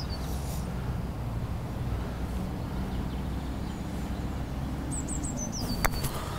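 A single sharp click of a putter striking a golf ball just before the end. Before it, a bird sings a short run of high, falling chirps over a steady low outdoor rumble.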